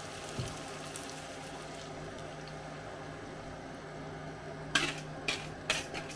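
Beaten eggs and milk poured from a plastic bowl into a hot frying pan of vegetables, with a steady sizzle and a faint low hum underneath. Near the end come several sharp knocks as a wire whisk scrapes out the last of the mixture against the bowl.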